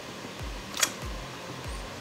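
A single short kiss smack a little under a second in, over background music with a steady low thumping beat.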